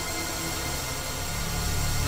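Logo-intro sound design: a sustained, noisy rumbling drone with held tones, swelling slightly toward the end as it builds to a hit.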